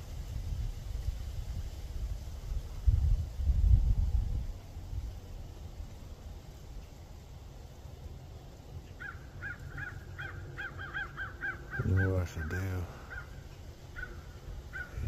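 A bird calling in a quick run of about a dozen short, even notes, starting about nine seconds in and lasting about three seconds. Earlier, around three to four seconds in, there is a brief low rumble.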